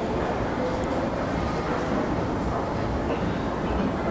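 Steady low rumbling background noise, with faint tones drifting in and out.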